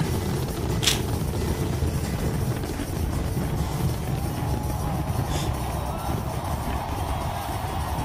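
Fireworks barrage: a dense, continuous low rumble of many shells bursting together, with a sharp crack about a second in.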